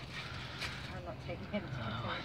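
Faint background conversation of other people talking, with no single loud event.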